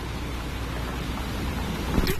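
Steady low rumble and hiss of roadside noise, growing a little louder as a Chevrolet Avalanche SUV turns in toward the camera, ending in a sudden sharp knock as the vehicle strikes the reporter and her camera setup.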